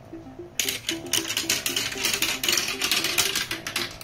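Marbles rattling and clicking in quick succession through a plastic marble run track, starting about half a second in and stopping near the end, over background music.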